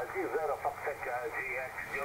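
Another amateur station's voice received on single sideband through an Icom IC-7300: thin, narrow speech over a steady hiss of band noise.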